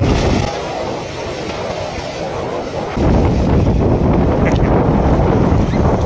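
A group of people plunging into a large round water tank, a burst of splashing right at the start and then continuing splashing in the water. Heavy wind buffeting on the microphone, much louder from about halfway through.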